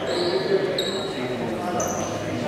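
Voices of players and bench echoing in an indoor basketball gym, with a few short, high squeaks.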